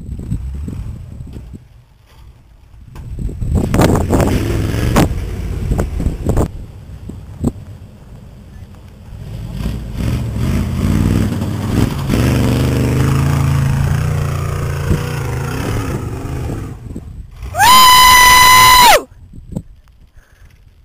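Engine of a Chevy Blazer-based 4x4 truck running and revving as it drives in loose sand, the pitch rising and falling. Near the end a loud, steady high-pitched tone sounds for about a second and a half.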